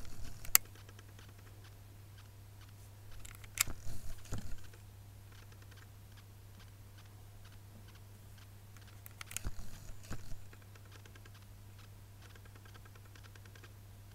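Handling noise of a felt-tip eyeliner pen moved about close to the microphone: one sharp click about half a second in, then short clusters of clicks and rattles around four seconds and again around ten seconds, over a steady low hum.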